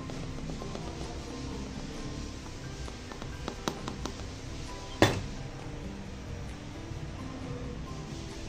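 Background music plays throughout. A few light clicks come in the middle and one sharp tap about five seconds in: a metal strainer knocking against the rim of a steel mixing bowl while flour is sifted.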